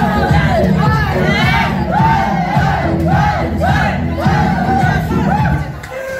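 Loud dance music with a steady beat, and a group of young people shouting and chanting along in time, about two shouts a second. The music cuts out near the end.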